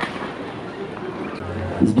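Outdoor background noise with indistinct voices, and one short sharp crack right at the start. A man's narrating voice comes in near the end.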